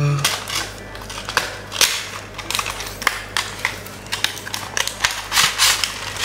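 A sealed cardboard toy box being opened by hand: the seal broken, the flap lifted and the packaging slid and handled, giving an irregular run of scrapes, rustles and crinkles.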